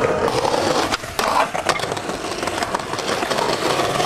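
Skateboard wheels rolling over concrete pavement, with a few sharp clacks of the board about a second in.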